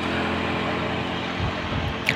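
A steady mechanical hum, like an engine running, with faint constant tones in it.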